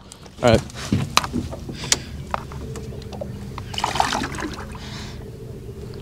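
Water splashing and sloshing as a large channel catfish is held in the lake at the side of a boat, with a few sharp knocks in the first two seconds and a louder patch of splashing around the middle.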